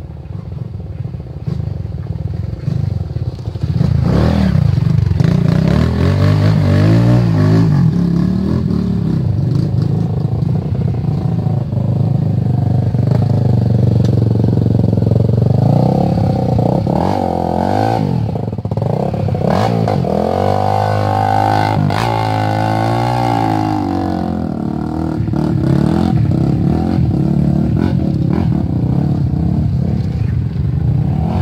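Off-road dirt bike engines revving hard through deep mud, the pitch rising and falling again and again with the throttle as the riders fight for grip. The engines grow much louder about four seconds in as the first bike comes close, and a second bike follows.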